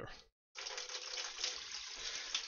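Water pouring from a tumble dryer's condensate tank into a plastic funnel on a bottle, a steady gush that starts about half a second in.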